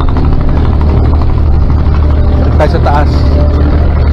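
A creek boat's engine running with a steady low drone under way, with people's voices heard briefly near the middle.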